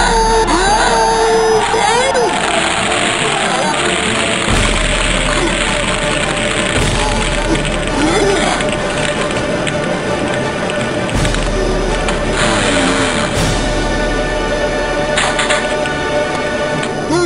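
Music playing over a long splashing rush of ice water being dumped from a bucket over a person, with drawn-out gliding cries.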